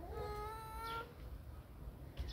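A cat meowing once: a single drawn-out call of about a second that rises slightly in pitch and then stops.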